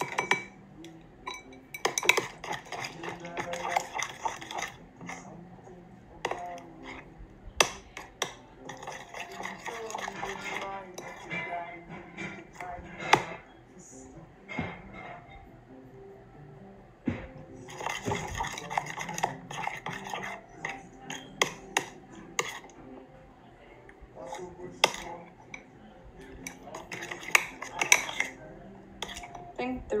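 A spoon stirring thick glue slime in a glass bowl, with repeated clinks and taps against the glass, as tablespoons of Sta-Flo liquid starch are mixed in and the slime begins to thicken.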